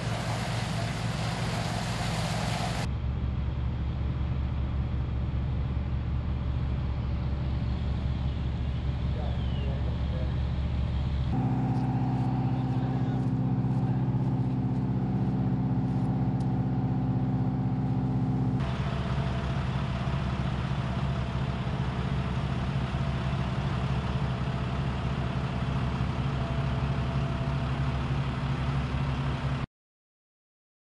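Fire apparatus engines running, a steady low drone whose pitch and level change abruptly about 3, 11 and 19 seconds in, then cut off just before the end.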